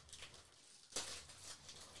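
Faint rustling and crinkling of wrapping paper as hands handle a wrapped present, with a slightly louder crinkle about a second in.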